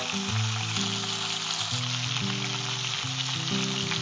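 Chicken pieces sizzling steadily as they fry in hot oil in a nonstick pan, turned with a slotted steel spatula. Soft background music of held low notes plays underneath.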